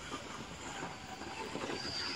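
Electric bicycle's rear hub motor giving a faint, thin high whine near the end, over a steady background of noise.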